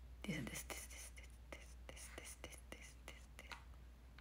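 A young woman speaking softly under her breath, mostly whispered, with a short voiced sound dropping in pitch about a third of a second in. A steady low hum lies underneath.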